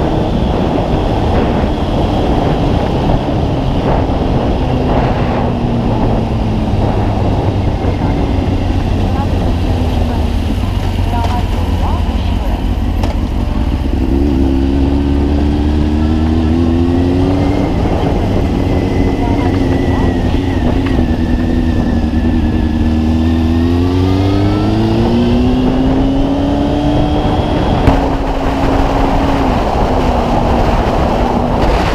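Honda CB600F Hornet inline-four motorcycle engine heard from the rider's position, dropping in pitch as the bike slows, then accelerating hard through the gears with the pitch climbing in repeated sweeps from about halfway in. Heavy wind rushes over the microphone throughout.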